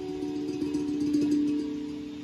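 Guitar played slowly with notes left ringing: a held note with a wavering pitch swells to a peak about a second in and then dies away.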